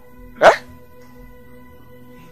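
Background music with steady held tones. About half a second in, a man gives one loud, short exclamation, "Eh?", rising in pitch.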